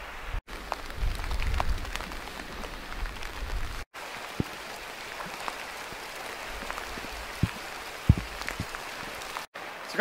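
Steady hiss of light rain, with scattered raindrop ticks, in a riverside scene. Wind rumbles on the microphone from about a second in to just before four seconds. The sound cuts out briefly three times where the footage is spliced.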